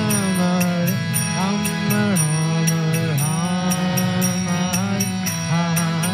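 A man sings a devotional chant over a harmonium's steady reed chords, with small hand cymbals ringing on a steady beat.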